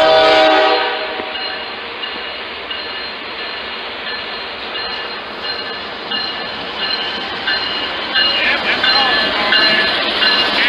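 A Norfolk Southern GE D9-40CW diesel locomotive's horn sounds a loud chord that cuts off about a second in. The lead units' engines and the train's wheels run on steadily as the train passes close by.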